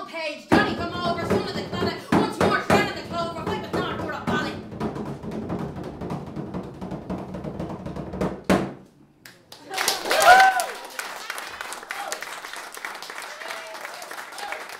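Bodhrán frame drum beaten in quick strokes for the first few seconds under a woman's voice, then a softer continuous rolling that stops abruptly past eight seconds. About ten seconds in comes a single rising-and-falling vocal cry.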